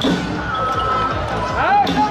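Temple procession music with drumbeats and people's voices. A held note runs through the middle, and near the end two pitched notes swell up and fall away.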